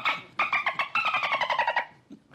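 A man imitating dolphin chatter with his voice: rapid trains of clicks with a squealing pitch. There is a short burst at the start, then a longer one from about half a second in to near the end, falling slightly in pitch.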